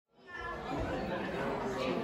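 Many people chatting at once in a large room. The sound fades in quickly from silence at the very start.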